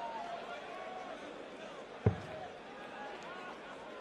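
A dart striking a bristle dartboard once, a single sharp thud about two seconds in, over the steady murmur of a large crowd in an arena.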